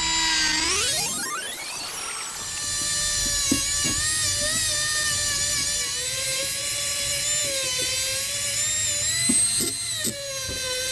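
Small cordless die grinder with a polishing bit, smoothing the ports of a two-stroke scooter engine case. It spins up with a rising whine over the first two seconds, then runs at a steady high whine whose pitch wavers slightly as it works the metal, with a few faint ticks.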